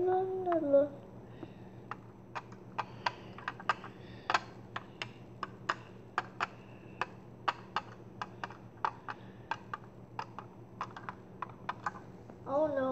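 Plastic Lego pieces and minifigures clicking and tapping on a Lego baseplate, a long irregular run of small sharp clicks, a few a second. A child's short hummed note rises and falls at the very start.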